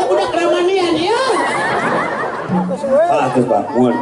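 Men talking through stage microphones, with crowd chatter underneath.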